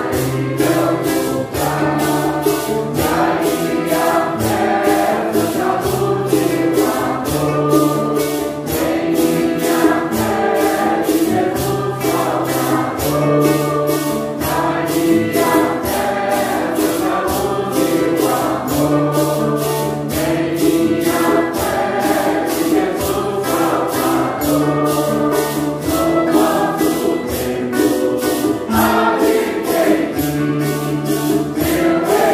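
A congregation of men and women singing a Santo Daime hymn in Portuguese together. A shaken percussion beat keeps time at about two strokes a second, over a low accompaniment that moves from note to note.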